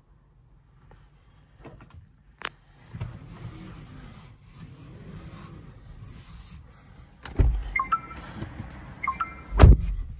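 Car power window motor running for about four seconds and stopping with a heavy thud, then a second, louder thud shortly before the end, with a few short high tones in between.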